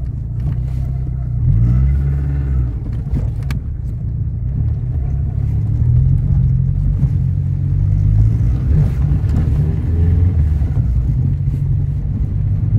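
Peugeot 106 engine and running gear heard from inside the cabin while driving over a rough dirt track, the revs rising and falling. A single sharp knock about three and a half seconds in.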